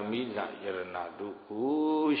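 A Buddhist monk's voice preaching a Burmese sermon in a chanting, sing-song delivery, with one long drawn-out syllable near the end.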